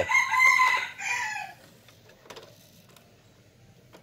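A rooster crowing once, a loud wavering call that falls away after about a second and a half. After that it is quiet except for a few faint clicks as the mini system's CD tray closes and loads the disc.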